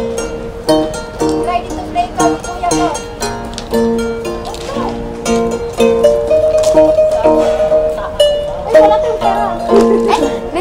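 A courting serenade: a small plucked string instrument, ukulele-like, strumming chords in a steady rhythm under a singing voice, with one long held sung note just past the middle.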